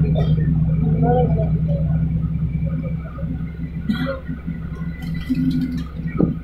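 Steady low rumble and engine hum heard from inside a slowly moving vehicle, easing off and getting quieter about halfway through, with faint voices and a few light clicks.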